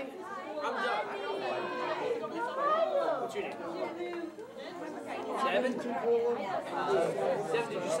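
Speech only: several people chatting and greeting each other, their voices overlapping.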